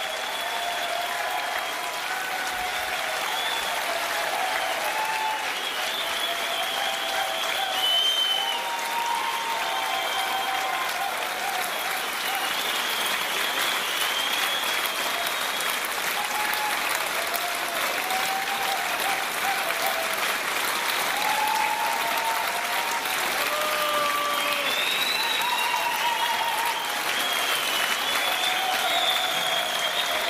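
Theatre audience applauding and cheering, with short shouts rising over a steady wash of clapping that builds slightly.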